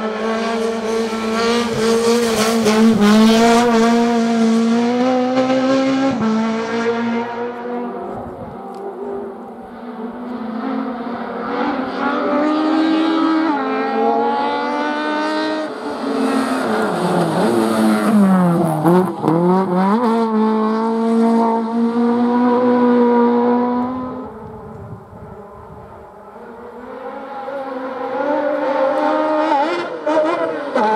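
Autobianchi A112 hillclimb car's four-cylinder engine revving hard, its pitch held high and dropping in steps at the gear changes. A little past the middle the pitch falls steeply and climbs back. It grows quieter a few seconds before the end, then rises again.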